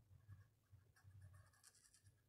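Faint scratching of a brown felt-tip marker on paper in short colouring strokes, busiest in the second half.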